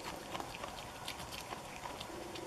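A Virginia opossum chewing a crisp hard-shell taco: quiet, irregular clicks and small crunches of the shell and its smacking mouth.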